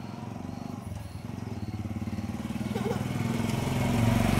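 A vehicle engine running steadily and growing louder toward the end as it comes closer.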